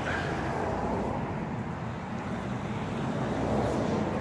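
Steady hiss and rumble of traffic on a nearby road, swelling slightly near the end.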